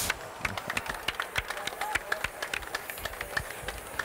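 Light applause from a small group: separate, uneven hand claps come quickly one after another.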